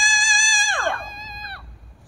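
Singing: a long, high held note that slides steeply down in pitch about a second in and fades away, with musical accompaniment.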